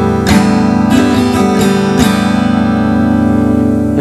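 Acoustic guitar strummed in a down-down-up-down-up-down-down pattern. The strokes fall in the first two seconds, then the last chord rings on.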